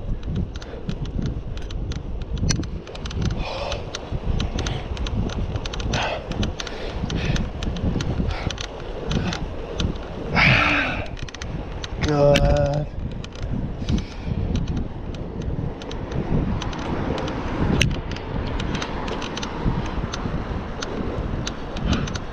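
Steady wind rumble on the microphone and tyre-on-road noise from a road bicycle being ridden, with scattered light ticks. About halfway through there is a short breathy burst, then a brief voiced sound from the rider.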